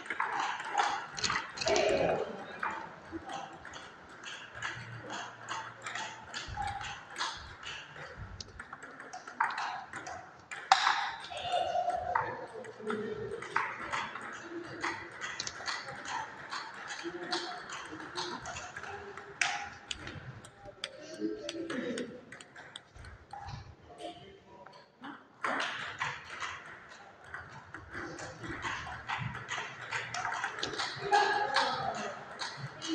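Table tennis rallies: a celluloid-type ball clicking back and forth off bats and table in a quick series of sharp ticks, with a short break between points about three-quarters of the way through. Voices murmur in the hall underneath.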